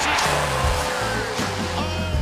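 Pump-up backing music with a heavy stepped bass line and a long held note, over the noise of an arena crowd from the game broadcast.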